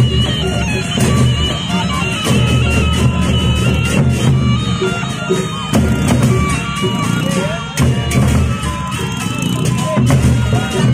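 A Lombok gendang beleq ensemble playing in procession: large two-headed barrel drums beaten in a driving, continuous rhythm under a sustained reedy melody line of held notes.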